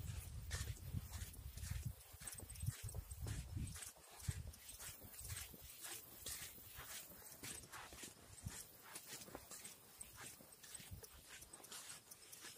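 Footsteps on a dirt road, walking at a steady pace, with a low rumble on the microphone for the first few seconds.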